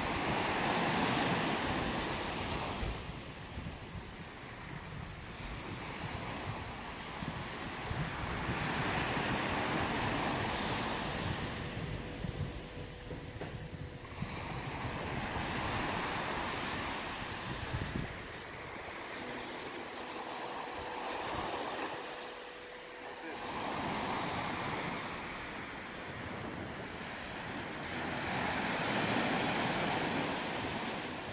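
Small waves breaking and washing up a sand beach in slow surges, one about every six or seven seconds. Wind buffets the microphone through the first half.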